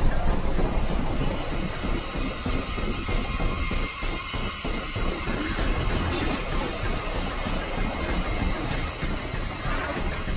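A steady, dense low rumble with faint high tones above it, pulsing quickly for a couple of seconds in the middle, from a film soundtrack.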